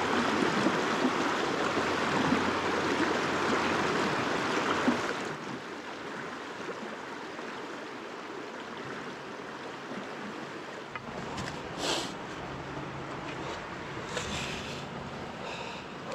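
Rushing river water running fast over rocks in a riffle, loud and steady. About five seconds in it drops suddenly to a softer, steady flow.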